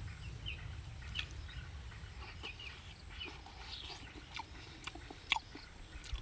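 Faint bird calls, short chirps scattered throughout, with a few soft clicks.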